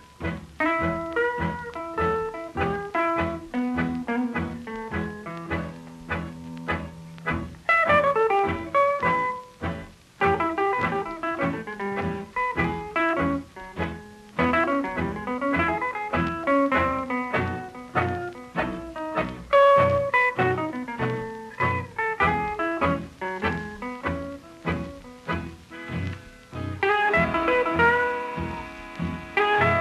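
Guitar instrumental of blues picking: quick runs of plucked notes over a steady pulse of bass notes, on an old radio transcription recording.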